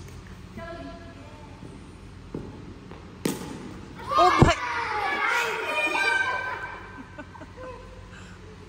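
A sharp knock about three seconds in, followed by a couple of seconds of loud, high-pitched excited voices shouting, with a dull thud among them.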